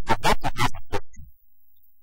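A man's voice speaking for about a second, then a short pause.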